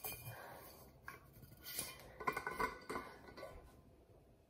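Light clinks and knocks of an insulated stainless-steel water bottle and its lid being handled, a few scattered at first and a small cluster in the second half, fading out near the end.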